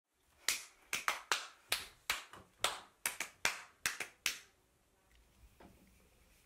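About a dozen crisp finger snaps in a loose, uneven rhythm, stopping a little past four seconds in.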